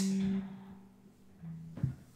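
A single low guitar note ringing on steadily and fading out within the first half second, then near silence with a faint low tone briefly near the end.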